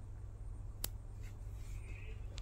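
A folded linen dupatta being handled and opened out on a tabletop, with one sharp click a little before the middle and a few faint ticks, over a low steady hum.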